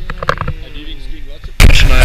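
A few light clicks and a faint wavering tone, then, near the end, a sudden loud rush of wind buffeting the action camera's microphone.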